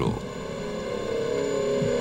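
A steady droning hum of several held tones that grows slightly louder: a suspense drone in the documentary's underscore.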